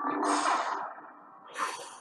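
Two breathy exhalations: a long one that fades over about a second, then a short one near the end, over a faint steady hum.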